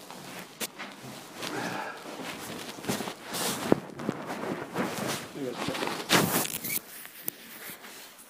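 Quiet, indistinct talk among a few people, mixed with rustling and a few sharp knocks and clicks as they move about and handle things. The loudest rustle comes about six seconds in.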